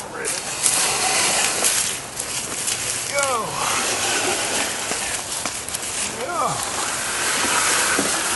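Wooden planks scraping and rustling as they are slid along bridge timbers over dry leaf litter, with people's voices calling out twice.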